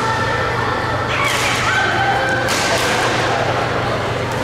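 Badminton rackets striking the shuttlecock: two sharp hits, about a second in and again about two and a half seconds in, over a steady low hum.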